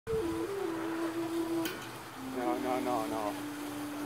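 A person's voice holding long notes at steady pitches, stepping down from one note to the next, with a single sharp click partway through.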